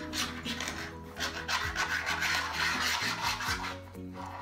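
Palms rubbing and shaking briskly together with a penny cupped between them, a continuous rapid rasping swish.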